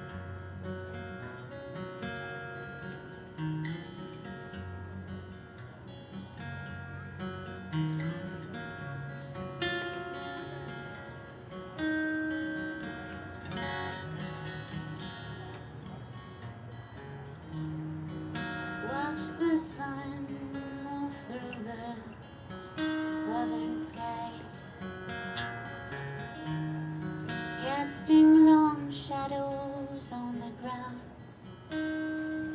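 Solo acoustic guitar with a capo, its picked notes ringing as a song opens. From about two-thirds of the way in, a woman's singing voice comes in over the guitar.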